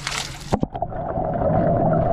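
Fountain jet splashing into a shallow pool, heard at the water's surface as a bright, steady hiss. About half a second in, a few sharp knocks come as the camera goes under. The sound then turns into a muffled underwater rumble with a steady hum.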